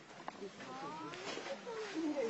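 Indistinct voices of people talking, getting louder near the end.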